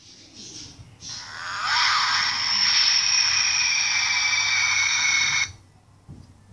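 Large Rising From the Grave Reaper animatronic prop activating after a sound trigger (a clap): a loud, steady, high-pitched mechanical sound starts about a second in as the figure rises, holds for about four seconds and cuts off suddenly near the end.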